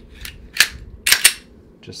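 Glock 43 slide being fitted back onto its polymer frame and snapping home: a few sharp clicks of metal on polymer, the loudest pair close together about a second in.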